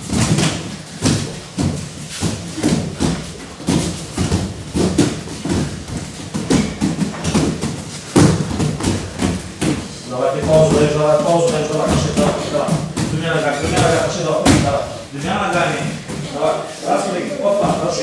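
Irregular thuds and slaps of children's bare feet landing on judo tatami mats as they jump over crouching partners, with voices in the hall, louder from about halfway through.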